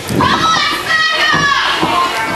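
Live wrestling audience's voices, with children's high-pitched shouts and yells standing out over one another.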